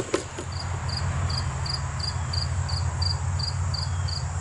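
A cricket chirping steadily, about two to three short chirps a second, over a louder low steady rumble.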